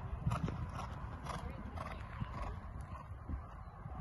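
A horse's hooves thudding on a sand arena as it lands from a jump and canters on, its strides repeating as low thuds.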